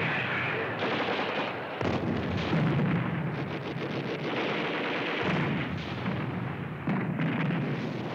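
Battle sound effects of artillery shells exploding and machine-gun fire, a continuous din with fresh blasts about two, five and seven seconds in and a rapid rattle of shots around the middle.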